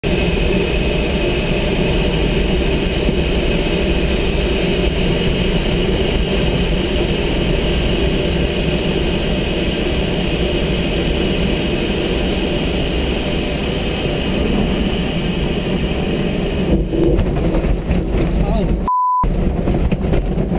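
Steady rush of airflow and rattle inside a glider's cockpit on final approach. Near the end the glider touches down on grass with its wheel still retracted, a wheels-up belly landing, and the sound roughens as it slides. A short single-tone beep sounds about a second before the end.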